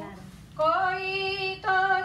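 A woman singing through a microphone: after a brief pause she comes in about half a second in with long held notes, moving to a new note just before the end.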